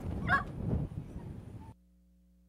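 Outdoor wind rumble on the microphone with one short honk-like call about a third of a second in. The sound cuts off abruptly near the end, leaving only a faint low electrical hum.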